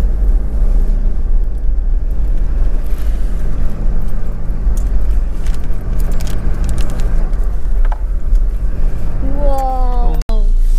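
Car engine and road noise heard from inside an SUV's cabin as it drives slowly along a rough narrow road: a deep constant rumble with a steady engine hum, and scattered light clicks and rattles from the cabin through the middle. A voice starts near the end.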